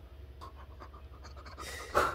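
A drunk man's breathing, ending in a breathy, puffing exhale near the end.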